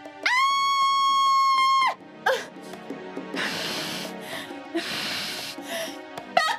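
A woman screams in pain in one long, held cry. It is followed by a short cry and two heavy, rasping breaths, the sounds of a woman in labour pains.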